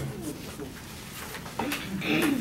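Low, indistinct voices murmuring in a lecture room, with short low voice-like sounds near the start and again near the end.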